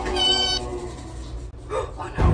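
A cat meowing: one short, high-pitched meow in the first half-second.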